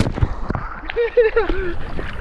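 Swimming-pool water sloshing and churning right after a jump-in, with a few small knocks and a short burst of voice about a second in.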